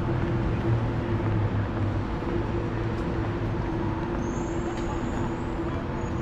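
City street traffic: a steady low hum of vehicle engines and passing cars, with a faint high-pitched squeal about four seconds in.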